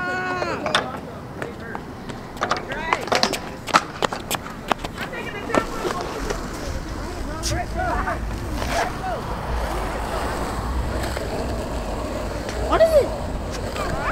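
Skateboard wheels rolling on concrete, a low rumble that builds through the middle and fades near the end, among scattered sharp clacks of boards hitting the ground. Voices talking in between.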